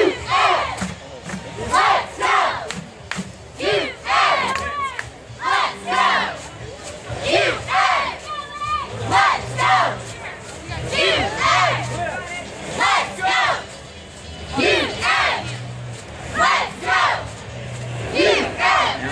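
A cheerleading squad shouting a cheer: short pitched yells, one or two a second, over a crowd.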